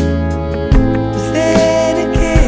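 Instrumental band music with no sung words: a steady bass and sustained chords, drum hits at the start and about three-quarters of a second in, and a held melody note with a slight waver in the second half.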